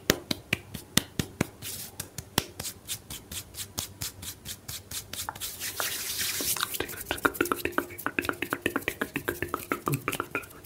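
Fast ASMR hand sounds made close to the microphone: sharp snaps and claps at about four a second, a short stretch of hissing palm-rubbing about halfway through, then quicker clicks.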